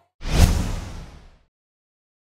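A single whoosh sound effect with a deep low thud, an editing sting that rises sharply to a peak about half a second in and dies away within about a second.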